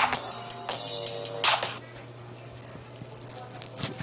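Electronic horror-themed loop played from a phone beat-making pad app, dying away about two seconds in. A low steady hum remains after it.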